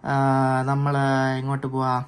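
A man's voice drawing out one long vowel at a steady pitch for about a second and a half, a hesitation sound, then a short gliding syllable near the end.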